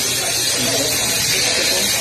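A steady buzzing hiss with a low hum under it, from some unseen machine or motor running, with people talking over it.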